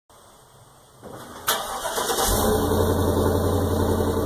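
A truck engine starting: it turns over with a sharp onset about one and a half seconds in, then catches and runs steadily.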